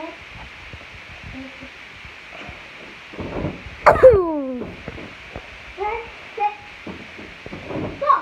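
A rustle and soft thump, then one loud whooping cry that slides down in pitch about four seconds in. A few short vocal sounds follow about two seconds later.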